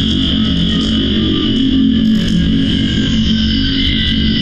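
Distorted electronic noise music: a dense, unbroken drone with a bright high tone over a low pitched one. The track's signal is processed through an analogue amplifier simulation plugin.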